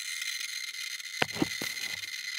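Handheld Geiger counter clicking so fast that the clicks run together into a steady, high-pitched crackle, registering about 13,000 to 14,000 counts per minute beside a piece of carnotite-bearing uranium ore. A few sharp knocks come a little over a second in.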